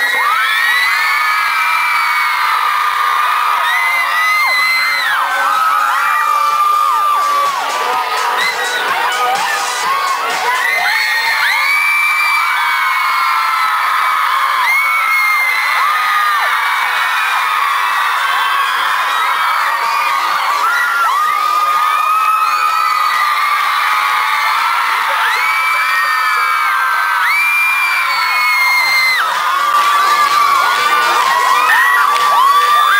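Concert crowd screaming and cheering: many high-pitched voices overlapping in continuous, rising and falling screams.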